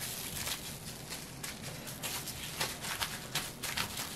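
Plastic cling wrap crinkling softly as hands fold and press it around a rice cake, in faint irregular crackles.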